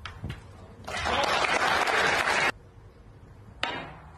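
Arena audience applauding for about a second and a half, cut off abruptly, with sharp clicks of snooker cue and balls before and after it.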